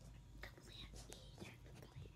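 Faint whispering: a person's hushed, unvoiced speech, with soft clicks and rustles.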